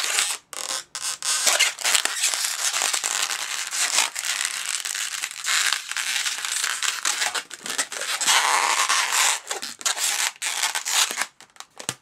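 Inflated latex twisting balloon rubbed, squeezed and twisted in the hands, bubbles turning against each other: a near-continuous scratchy, crinkly rubbing with short breaks.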